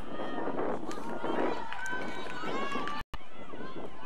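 Many voices of soccer players and sideline spectators shouting and calling out at once on the field. The sound cuts out for a moment about three seconds in.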